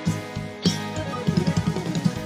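Instrumental introduction of a pop song: a drum kit keeps a steady beat with bass drum and snare under held chords, with a cymbal crash a little over half a second in and a quick run of drum hits near the end.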